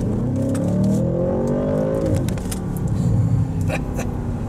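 2024 Audi S8's twin-turbocharged 4.0-litre V8 accelerating hard after a downshift, heard from inside the cabin: the engine note climbs for about two seconds, then falls away and settles.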